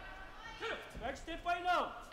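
Speech only: a commentator talking.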